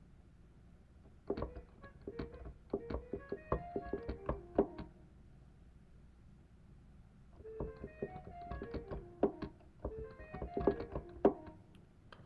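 A quick melodic lick of short piano-like notes, played twice with a pause of about three seconds between: a fast line for the arrangement being tried out.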